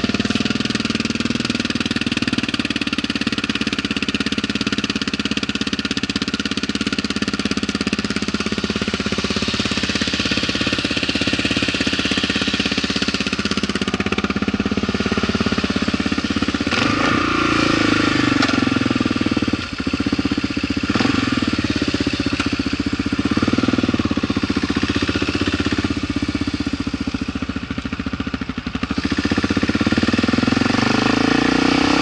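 Kawasaki KLR650 single-cylinder engine, fitted with a 42mm Mikuni flat-slide carburettor, idling steadily after starting, then revving with changing pitch as the motorcycle moves off.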